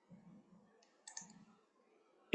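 Near silence with a few faint clicks, the clearest cluster about a second in.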